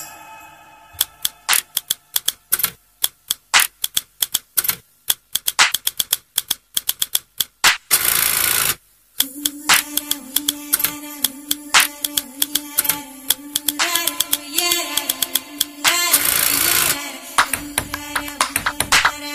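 Instrumental passage of a Tamil film song: a fast run of sharp, dry percussive clicks, then a short hissing crash about eight seconds in. After that a held low note sounds under continuing clicks, with another crash near the end.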